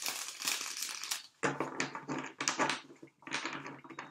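A deck of tarot cards being shuffled by hand: quick, irregular rustling and slapping of cards sliding against each other, in three runs with brief pauses between.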